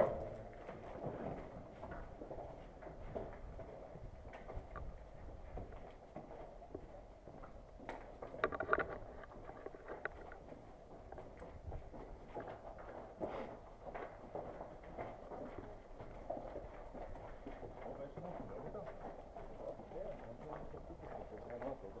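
Footsteps of a person walking on grit-covered concrete, with scattered faint knocks and rustles from their gear.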